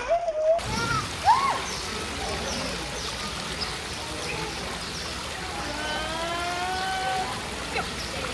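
Shallow running water in a play stream, splashed by a toddler's wading steps. Children's voices call out over it: a sharp high shout about a second in and a longer call near the end.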